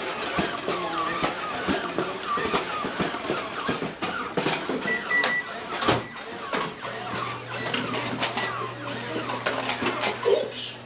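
Toy humanoid robot's small geared motors whirring and clicking as it walks and swings its arms, with a sharp click about six seconds in and a low steady hum from a second later.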